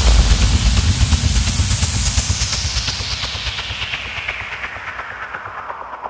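A rushing hiss over a low, pulsing rumble that fades out over several seconds, its high end sinking steadily: the closing sound effect of a radio station ident.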